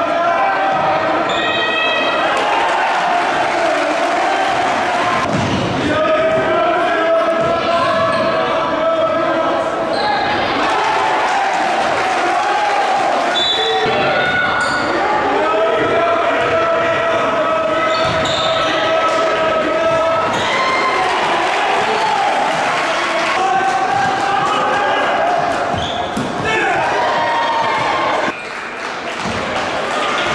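A basketball being dribbled on a hardwood gym court, with players and spectators shouting and calling out over a steady crowd din in the echoing hall.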